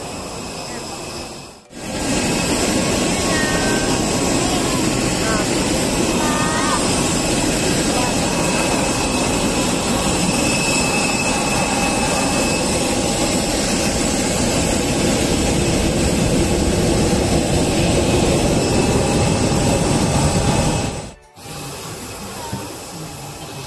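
Loud, steady roar of jet aircraft engine noise on an airport apron, with a faint high whine over it.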